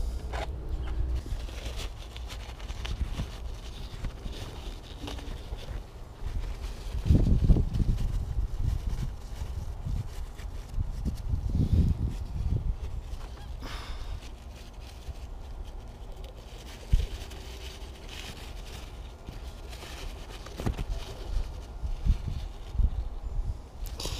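Low wind rumble on the microphone with scattered knocks, rubbing and a sharp click from handling, as a paper towel is worked around an outboard engine's open spark plug hole.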